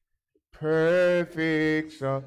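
A man's voice intoning words in long held, sung notes, starting about half a second in, with a brief break in the middle.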